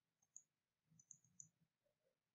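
Three faint computer mouse clicks over near silence, one shortly after the start and two close together about a second in, as buttons are pressed on an on-screen calculator.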